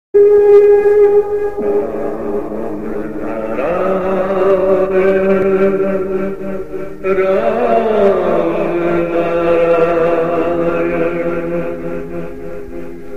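Devotional chanting in long held notes, with one note bending up and back down a little past halfway through.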